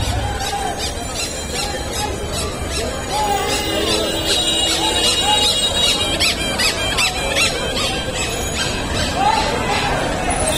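Crowd of voices talking over one another in a busy street market, with a burst of several high-pitched wavering squeals about six to seven seconds in.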